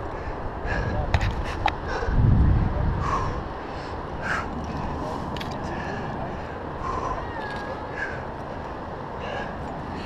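Steady wind noise on a helmet-mounted camera's microphone, swelling in a louder low gust about two seconds in, with a few light clicks and faint short chirp-like tones over it.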